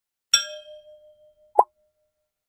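Cartoon sound effects. A bright, bell-like ding about a third of a second in rings down over about a second, then a short pop comes near the end.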